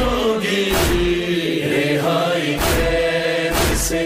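An Urdu noha, a Shia mourning lament, recited by a male voice over held backing voices, with a deep beat about once a second.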